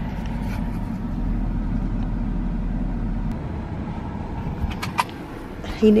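Steady low rumble of a Ford SUV idling, heard from inside the cabin. The rumble drops in level about three seconds in, and a few light clicks follow near the end.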